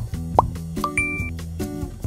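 Cartoon-style 'plop' sound effects, short upward-gliding pops, over light background music; two pops come in the first half second, and a brief high ding sounds about a second in.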